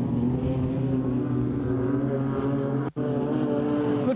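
Speedway sprint car engine running in a steady drone on a dirt track, broken by a very short gap just before three seconds in.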